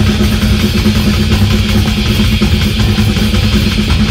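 Live metal band playing loud, with distorted guitars and drums in a dense, unbroken wall of sound and a low guitar note held through it.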